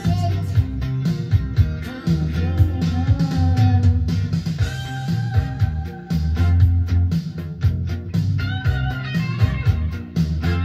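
Rock music with a guitar solo: bending, sliding lead guitar notes over a steady bass and drum beat.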